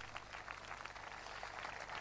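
Faint background noise of a large audience with light scattered clapping, a soft patter of small claps.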